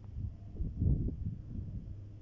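Low, irregular rumbling on the microphone, loudest about a second in, over a steady low hum.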